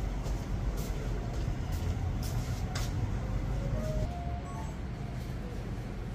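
Room tone of a large hall during a standing silence: a steady low rumble, with a few faint clicks.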